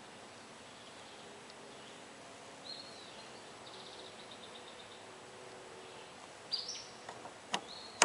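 Birds chirping faintly over a quiet background. Near the end come two sharp clicks as the blue low-pressure AC quick coupler is pushed onto the car's low-side service port.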